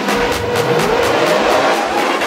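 Electronic dance track in a build-up: the kick drum drops out and a synth sweep rises in pitch, with vehicle-like revving character, over hi-hats ticking about four times a second.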